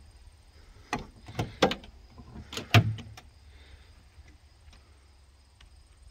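Car door being unlatched and opened on a 1969 Camaro: a few sharp clicks and knocks between about one and three seconds in, the loudest a knock with a dull thud near three seconds.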